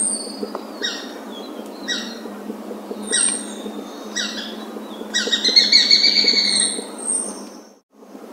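Bird calls: short harsh notes about once a second, then a longer chattering call lasting nearly two seconds, with a thin high note twice over them.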